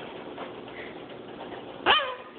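Goffin's cockatoo giving one short, loud call near the end, after a stretch of faint low sound.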